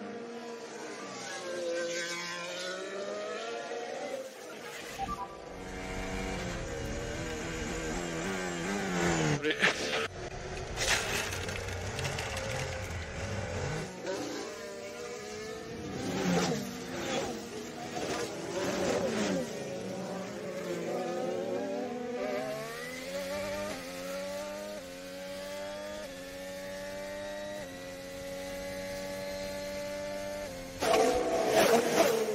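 Formula 1 cars' 1.6-litre turbo-hybrid V6 engines at racing revs, passing by with their pitch sweeping up and down. Near the end one engine climbs steadily, dropping in steps at each upshift.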